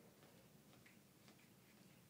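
Faint, scattered small splashes and drips of water, a handful of soft ticks over a quiet room, as a Harris's hawk bathes in a shallow pan.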